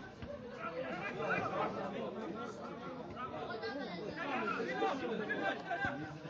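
Several voices of football spectators talking and calling out over one another. A single sharp knock just before the end, a ball being kicked.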